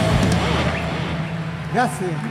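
A live rock band's final chord dying away at the end of a song, with a low sustained hum carrying on underneath. A single loud shouted voice rings out near the end.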